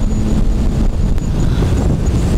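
Wind rushing over the microphone with the 2009 Suzuki Hayabusa's inline-four engine running at freeway cruising speed, a steady low rumble.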